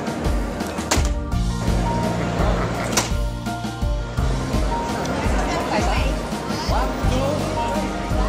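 Background music with a steady beat and bass line. Two sharp strikes, about one and three seconds in, are a bat hitting a stainless steel mesh security screen.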